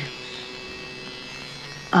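Cordless Dremel pet nail grinder running steadily with a thin, even electric motor hum as it is used to file a parrot's nails.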